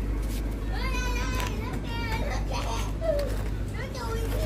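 Children's high-pitched voices calling and shouting in the background, loudest about a second in, over a steady low street rumble.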